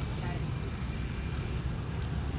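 Steady low rumble of outdoor background noise, with no distinct events standing out.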